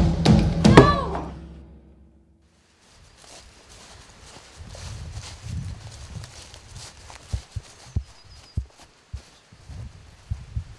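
A loud, high cry that rises and falls over a fading music drone in the first second. After a short quiet, feet scuffle and rustle through dry leaf litter, with several sharp thumps in the second half.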